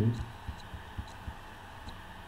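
Stylus tapping on a pen tablet during handwriting: soft low taps every quarter to half second, with a few faint ticks, over a steady low hum.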